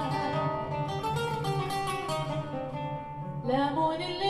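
Live acoustic ensemble music in an instrumental passage: an acoustic guitar plays a run of plucked notes over a steady low pulse. A woman's singing voice comes back in with a rising line a little before the end.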